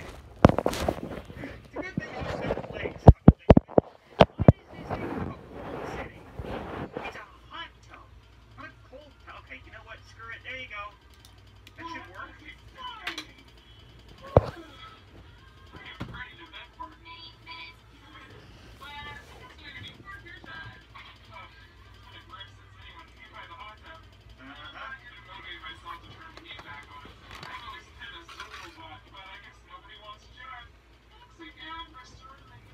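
A few sharp, loud knocks and bumps from the phone being handled in its first seconds, then speech and music from a video playing in the background at a lower level.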